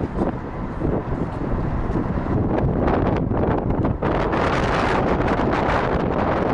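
Wind buffeting the camera microphone: a steady, unpitched rumble heavy in the low end that gets louder and fuller about four seconds in.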